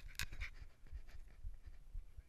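A person breathing hard in short, irregular puffs close to the microphone, with low bumps and rumble on the mic.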